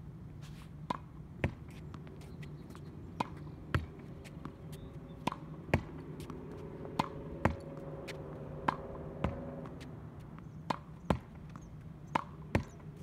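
Tennis ball rallied against a practice wall: sharp knocks of racket strings, backboard and court, mostly in pairs about half a second apart, repeating every two seconds or so.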